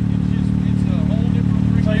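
Sport side-by-side UTV engines idling at a standstill: a steady, even, low hum that does not rise or fall.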